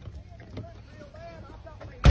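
Faint, distant voices talking over a steady low rumble.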